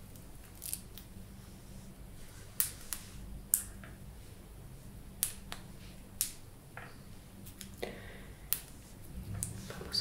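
Close handling sounds of a dried lavender sprig and fingertips against a shirt: scattered sharp, light clicks, roughly one a second, over a faint low room hum.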